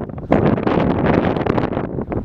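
Wind buffeting the camera microphone in steady, rough gusts.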